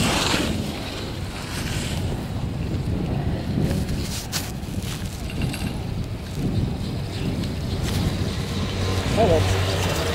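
Wind rushing over the microphone of a camera riding a moving chairlift, over the low steady rumble of the lift. A single sharp click comes about four seconds in.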